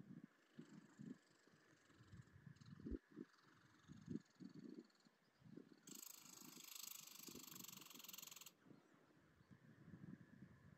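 Near silence with faint, irregular low thumps about twice a second from a hiker on the move. A steady hiss cuts in about six seconds in and cuts off suddenly some two and a half seconds later.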